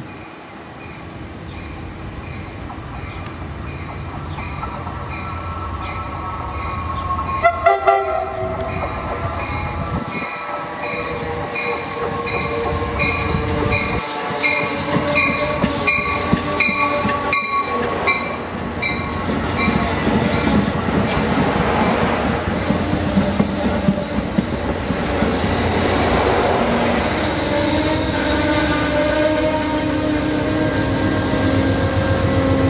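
Shore Line East push-pull diesel passenger train arriving at a station, cab car first: a bell rings steadily about twice a second and short horn blasts sound about eight seconds in. The sound grows louder as the coaches roll past with wheel noise, and the diesel locomotive pushing at the rear comes up loudest near the end.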